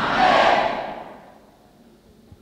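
Congregation answering with a brief collective shout of many voices, which fades away over about a second.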